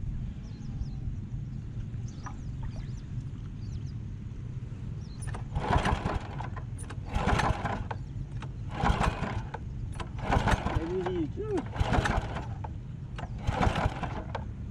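The small single-cylinder air-cooled engine of a walk-behind paddy tiller runs low and steady. From about halfway through, it surges six times, about a second and a half apart.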